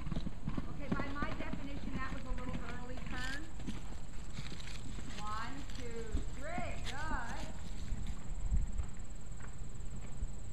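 Horse's hoofbeats cantering on a sand arena's footing, a run of soft irregular thuds as it goes around the jump course.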